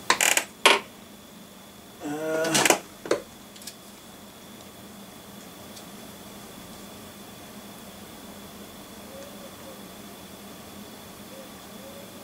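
A few sharp clicks and knocks of objects being handled, then about two seconds in a short rising vocal exclamation of surprise and another click. The rest is quiet room tone with a faint steady high-pitched whine.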